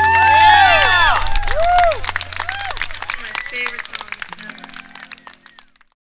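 An audience clapping, cheering and whooping as a song ends, while a low sustained note from the band rings on and stops about three seconds in. The clapping thins out and fades toward the end.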